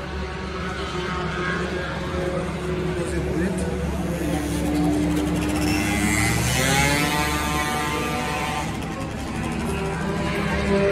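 A car engine running, its pitch rising as it revs about six seconds in, over a steady low hum and background voices.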